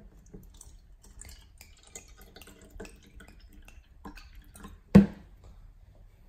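Water poured from a glass bottle into a clear plastic cup, splashing and trickling unevenly as the cup fills. Near the end a single loud knock.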